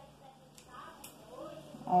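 Two faint snips of small scissors cutting excess soft biscuit modelling clay.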